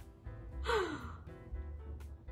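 A short gasp about halfway through, falling in pitch, over soft background music.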